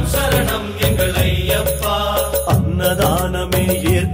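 Tamil Ayyappan devotional song: a man singing a melodic line over percussion and a sustained bass accompaniment.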